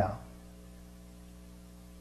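Steady low electrical mains hum, a stack of even tones, left audible once a man's voice trails off at the start.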